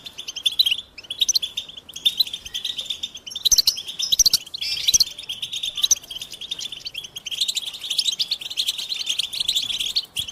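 European goldfinch singing: a fast, continuous twittering song of rapid trills and chirps, broken by short pauses about a second in and just before the five-second mark.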